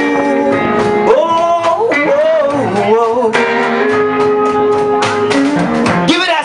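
Live blues band playing, with electric and acoustic guitars; a lead line bends up and down in pitch.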